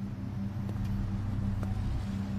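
Road traffic on a city street: cars driving past with a steady low rumble.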